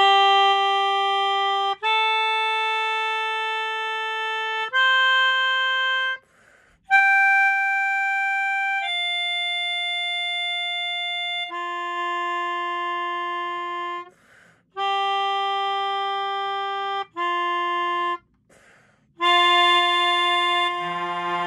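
Melodica played through its mouthpiece tube: a slow melody of long held single notes, each lasting one to three seconds, with short pauses between phrases.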